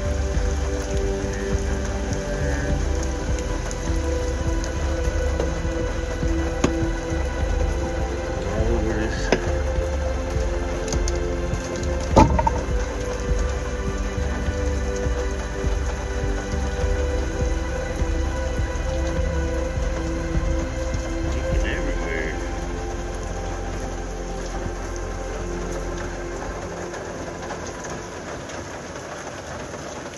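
Steady rain falling on a step van's metal body, heard from inside, under slow piano music with held notes. A single sharp knock sounds about twelve seconds in, and the whole thing grows quieter near the end.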